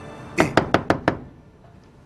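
About five quick knocks on a wooden door, close together.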